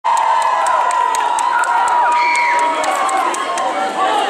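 Audience cheering and screaming, with long held high-pitched shrieks over the din of a crowd.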